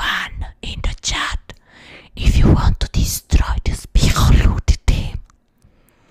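A woman whispering and making breathy mouth sounds right into a microphone, ASMR-style, in a run of short loud bursts that stop about five seconds in.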